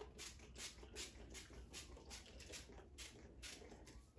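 Faint, quick rustling at about four strokes a second: fingers working through the fibers of a short synthetic wig.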